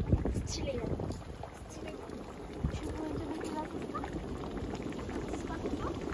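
Fumarole field with steam vents and hot mud pools, hissing and bubbling steadily, with wind on the microphone in the first second.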